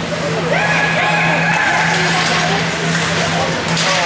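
Ice hockey skate blades scraping and squealing on the rink ice, with a thin high squeal starting about half a second in and lasting about a second and a half, over a steady arena hum. A sharp knock sounds near the end.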